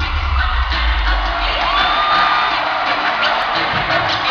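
Live hip-hop concert in a large hall, heard loud through a phone microphone. Heavy bass music drops away about a second in, and the crowd keeps cheering and shouting.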